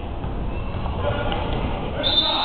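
Gymnasium crowd noise during a basketball game: an indistinct mix of spectator and player voices with scattered court sounds.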